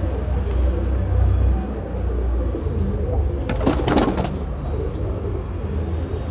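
Sabja tumbler pigeon cooing, with the loudest call about four seconds in, over a steady low rumble.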